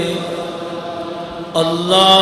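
A man's voice chanting Islamic devotional recitation in long held notes. A note fades away over the first second and a half, and a new held note begins about a second and a half in.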